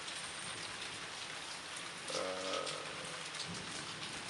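Steady rain, an even hiss throughout, with a man's short wordless 'ehh' about two seconds in.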